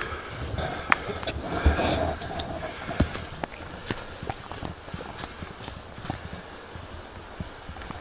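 Footsteps of a person walking along a dirt and leaf-litter path, a run of irregular steps.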